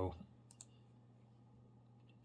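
Two quick clicks at the computer about half a second in, over a faint steady low hum.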